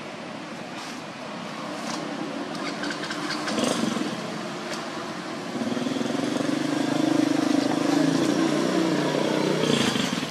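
A motorcycle engine running, its steady drone coming in about halfway through and growing louder before it cuts off near the end.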